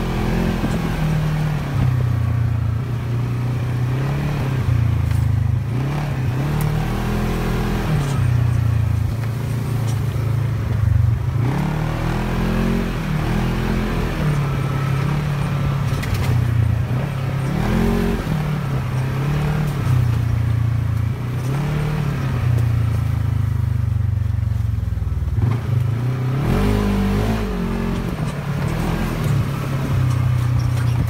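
A 2018 Polaris RZR XP 1000 side-by-side's parallel-twin engine, heard from the cab while driving a trail. It revs up and eases off over and over as the throttle is worked.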